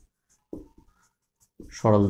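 Marker pen writing on a whiteboard, faint, between a man's spoken phrases: a short vocal sound about half a second in, and his speech resuming near the end.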